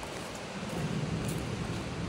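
Wind rumbling and hissing on the phone's microphone, steady, with no distinct event.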